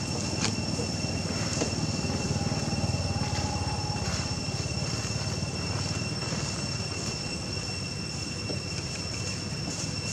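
Steady outdoor background noise: a constant low rumble with a thin, steady high whine above it.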